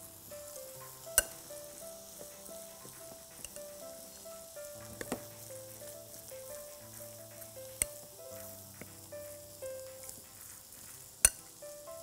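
A metal spoon stirring minced meat and chopped vegetables in a glass bowl, with a few sharp clinks against the glass. Soft background music with a slow melody runs underneath, along with a faint steady sizzle from a frying pan on the stove.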